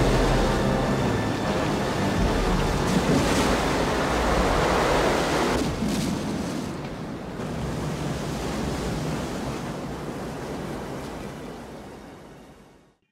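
Film-soundtrack rush of whitewater pouring through a dam spillway. It is a dense, steady rush that is loudest in the first half, then dies down and fades out near the end.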